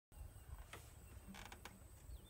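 Near silence with faint handling noise: a soft click, then a short cluster of clicks and a creak about a second and a half in, as the recording device is touched and the player settles with her acoustic guitar.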